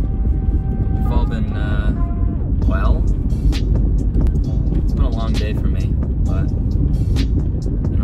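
Steady low rumble of a car's engine and road noise inside the cabin while driving, with music and a voice over it.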